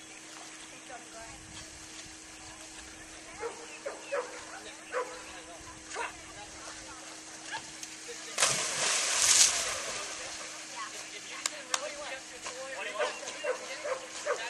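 A Chesapeake Bay Retriever barks a few short times. About eight seconds in comes one loud splash as the dog dives off the dock into the pool, and the splash dies away over a second or two.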